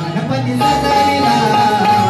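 Instrumental passage of a live devotional 'gan' song: a held melody line over tabla-style hand-drum playing, with no singing.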